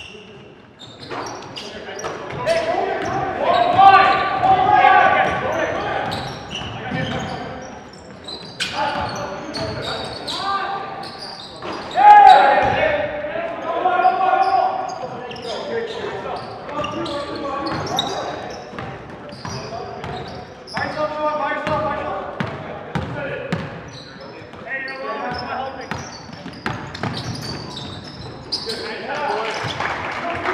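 Basketball being played in a gym: players' voices call out and shout, loudest about four seconds in and again near twelve seconds, over the repeated thuds of the ball bouncing on the hardwood floor.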